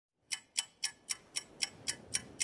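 Clock-like ticking, sharp evenly spaced ticks about four a second, as an intro sound on the soundtrack.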